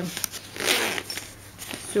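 The zipper on a fabric cooler bag's side pocket being pulled once: a short run of zipping noise about half a second in, lasting roughly half a second, with light handling of the fabric around it.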